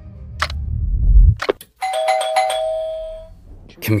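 Doorbell chime ringing a two-note ding-dong about two seconds in, then fading out. Before it, a low rumble swells and cuts off sharply, over regular ticks about once a second.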